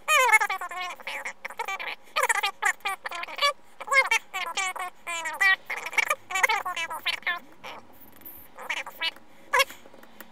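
Speech sped up by fast-forward playback: a voice turned into rapid, high-pitched chatter. It breaks off just before the end.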